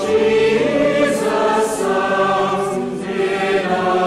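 A choir singing, many voices holding long notes with vibrato.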